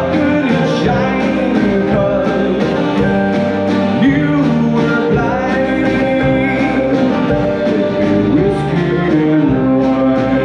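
Folk-rock band playing live: fiddle, acoustic guitar, mandolin, electric bass and a drum kit keeping a steady beat.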